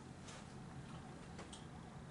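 Quiet room tone with a steady low hum and a few faint, soft clicks, about two of them.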